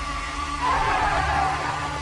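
Film battle-scene soundtrack: a steady low rumble, with a loud burst of noise from about half a second in that lasts about a second.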